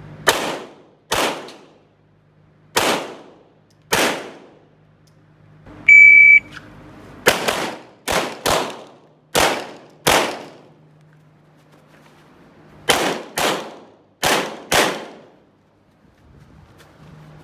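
Semi-automatic pistol firing thirteen shots in three quick strings of four, five and four, each shot ringing briefly in the covered range. About six seconds in, a shot timer gives a single loud electronic beep, and the second string starts about a second later.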